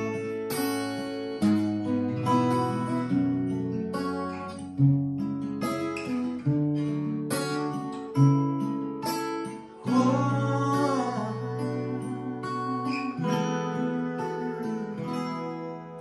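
Two acoustic guitars playing a song's instrumental intro, with chords strummed and picked, a new strike about every second.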